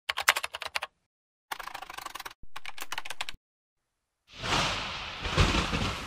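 Three short runs of rapid, sharp clicking like typing, separated by silence, the last a steady run of about ten clicks a second. About four seconds in, a loud, hissing wash of noise swells in and keeps going.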